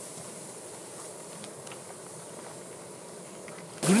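Steady low hiss of food cooking in a steaming pan over a camp stove, with a few faint clicks of tongs. Near the end a louder hiss cuts in suddenly.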